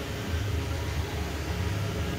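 Steady low rumble and hiss of background room noise, with no distinct event.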